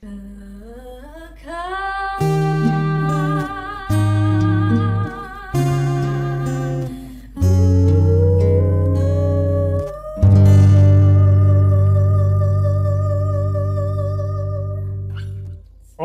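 A woman sings a slow melody with vibrato, gliding up into long held notes. Under it, low piano chords change every second or two, and the last one fades out slowly near the end.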